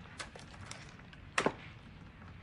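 Quiet room tone with a few faint clicks as headphones are put on and a portable CD player is handled. One sharper click comes about one and a half seconds in.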